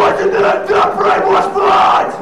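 Several voices shouting together at full volume over a held, distorted guitar note during a live crossover-thrash band set.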